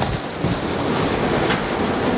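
Steady rushing noise on the microphone, like wind or handling noise, starting abruptly as the person carrying the microphone gets up and moves.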